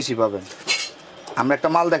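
A man talking while a cardboard product box is opened by hand, with a brief scraping handling noise in the middle between his words.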